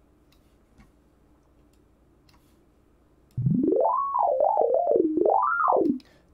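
Sytrus software synthesizer in FL Studio, played from its on-screen keyboard: after a quiet start, a single sustained tone comes in about three and a half seconds in and slides smoothly up, wavers, then slides down and back up in pitch before cutting off.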